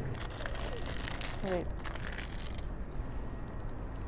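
Plastic food packaging crinkling and rustling as it is handled, busiest for the first two and a half seconds, then dropping to faint small crackles.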